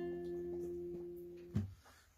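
Acoustic guitar with a capo letting its final strummed chord ring out and slowly fade, then damped by the strumming hand with a soft thump about one and a half seconds in.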